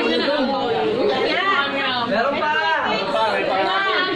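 Several people talking at once, their voices overlapping into chatter.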